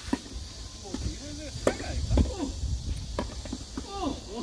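Tennis ball struck back and forth by rackets in a doubles rally: a run of sharp hits, the loudest close together in the middle, with short calls from the players between them.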